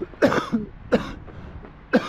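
A man coughing in three bursts about a second apart, the first the loudest, to clear a piece of nougat caught in his throat.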